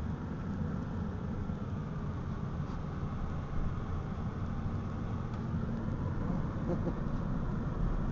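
Steady road and engine noise inside the cabin of a moving Ford Freestyle, heard from the back seat.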